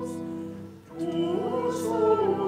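Singing over sustained organ chords: a voice holds a note, breaks off briefly just before a second in, then takes up the next phrase over the held accompaniment.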